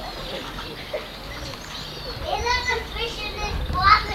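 Children's voices talking and calling out indistinctly, clearer and louder from a little past halfway.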